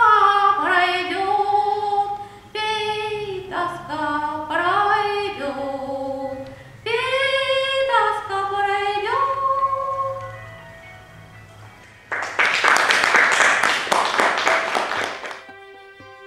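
A woman's solo voice singing a Russian folk song unaccompanied, in long held notes with slides between them, the last note fading out about ten seconds in. Then applause for about three seconds, cut off abruptly.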